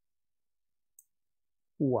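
Near silence, broken by a single faint, short click about a second in; a man's voice starts near the end.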